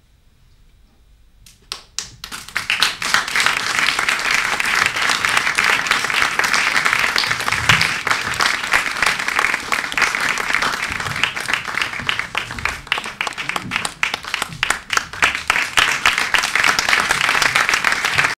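Audience applause: near quiet at first, then a few scattered claps about a second and a half in that quickly build into loud, steady clapping.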